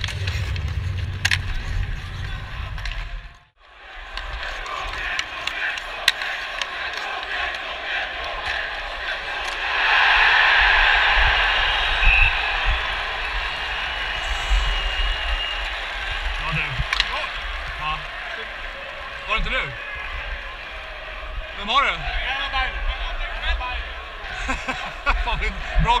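Ice hockey play heard from on the ice: skates scraping the ice and sharp knocks of sticks, puck and boards over arena crowd noise that swells loudly about ten seconds in. The sound cuts out briefly about three seconds in.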